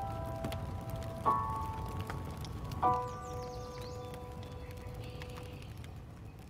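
The quiet closing of a pop song's music video: three soft chords struck about a second and a half apart, each left to ring and slowly fade.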